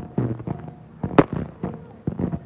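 A string of firecrackers popping in quick, uneven succession, with one sharp, much louder bang about a second in.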